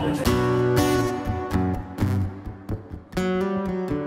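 Solo acoustic guitar playing a song's opening, a series of strummed chords that ring out and fade, with a short lull about three seconds in before the next chord.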